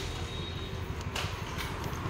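Steady low background rumble; the Dyson cordless stick vacuum in hand makes no motor sound, having gone dead.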